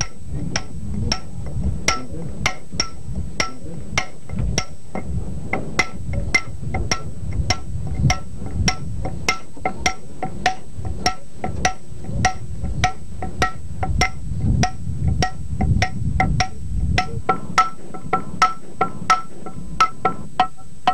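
Hammer blows on a steel chisel cutting stone, in a steady even rhythm of about two to three strikes a second, each strike giving a short metallic ring.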